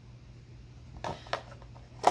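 Quiet room with a steady low hum, broken by two short light clicks about a third of a second apart a second in.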